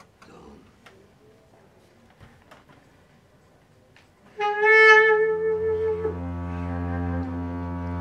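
A few soft clicks, then a bass clarinet enters about four seconds in with a loud held note that slides lower a couple of seconds later. Underneath it a double bass sounds a low bowed note.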